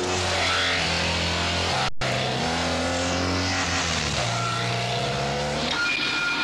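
Motorcycle engine running, its note holding and then shifting in steps, with a brief break in the sound about two seconds in.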